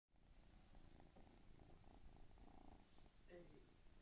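A ginger cat purring faintly, held right up against the microphone. A woman's voice starts near the end.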